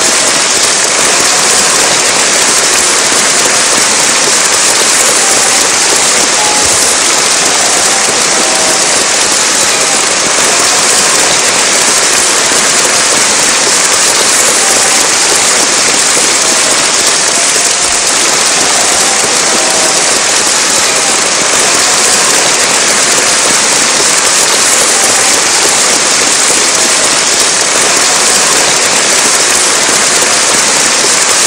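Sustained, dense audience applause, steady in level throughout.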